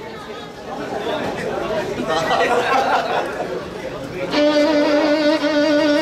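Indistinct chatter of voices in a large hall, then about four seconds in a mariachi band comes in suddenly and loudly, its trumpets and violin holding one long sustained note over the strings.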